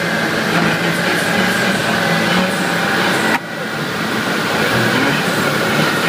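Bluefin Stage 2-tuned Ford Focus ST's turbocharged five-cylinder engine and exhaust running under load on a rolling road, along with tyre and roller noise. The sound builds slowly, drops suddenly for a moment about three and a half seconds in, then builds again.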